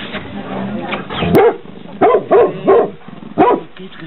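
A dog barking in about five short barks: one about a second in, a quick run of three in the middle, and one more near the end.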